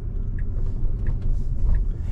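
In-cabin road and tyre noise of a Tesla electric car driving slowly through a turn: a steady low rumble with no engine note, and faint short ticks at an even pace.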